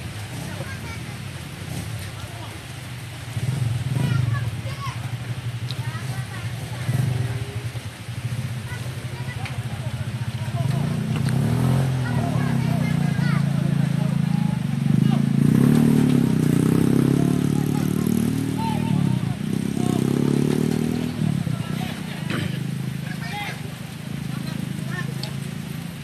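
A motor engine running nearby, its low hum swelling from about ten seconds in and rising and falling in pitch through the second half, with faint distant shouts.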